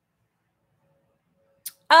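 Near silence, then a brief click near the end and a woman beginning to speak.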